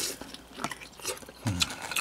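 Scattered light clicks and crackles of a thin plastic takeout tray and its plastic wrap being handled while a cooked beef rib bone is picked out of it.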